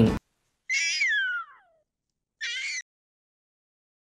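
Female puma (mountain lion) giving its scream-like mating call: one long call that starts high and slides down in pitch about a second in, then a shorter, steadier call about two and a half seconds in.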